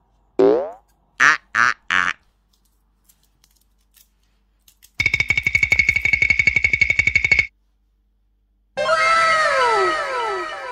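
A string of cartoon sound effects: a quick falling glide, then three short tones, then a rapid buzzing rattle with a steady high note lasting about two and a half seconds. Near the end comes a cascade of overlapping falling tones, like a magic-sparkle transition.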